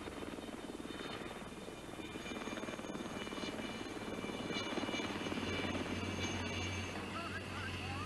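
Bell 47-type light helicopter flying overhead: a fast, steady rotor-and-engine chop with a thin high whine over it, growing louder past the middle.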